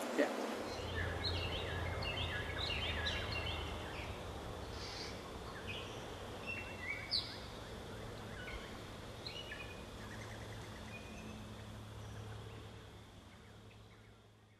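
Outdoor ambience of birds chirping in short falling notes over a low steady hum, fading out near the end.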